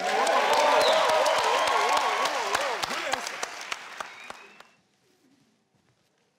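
Studio audience applauding, with cheering voices held over the clapping. It fades out and stops about five seconds in.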